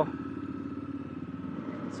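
Motorcycle engine running steadily as the bikes ride off, heard from the handlebar-mounted camera.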